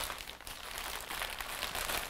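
Plastic parts bags crinkling and rustling in the hands as they are picked up and handled.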